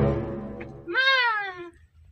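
A high, drawn-out cry that rises and then falls, starting about a second in, as a longer cry fades out at the start. A low hum dies away beneath them.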